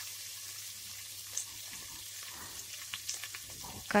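Sliced onion, mustard seeds and urad dal frying in hot oil in an aluminium pressure cooker: a soft, steady sizzle with a few faint crackles.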